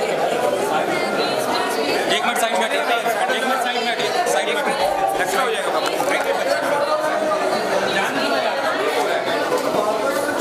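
Crowd chatter: many voices talking over one another at once, at a steady level with no pauses.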